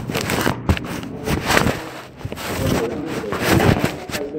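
Rustling, scraping and knocking handling noise on a concealed recorder as people move about, in irregular clicks and scrapes.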